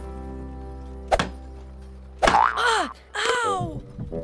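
Cartoon sound effects over steady background music: a single sharp knock about a second in, then two falling, pitched glides in quick succession.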